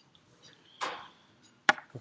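Quiet classroom during silent work: a brief noisy hiss about a second in, then a single sharp click or tap shortly before the talking resumes.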